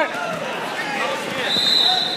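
Background chatter and voices in a gym crowd, with a short, steady, high-pitched whistle blast starting about one and a half seconds in, typical of a referee's whistle at a wrestling tournament.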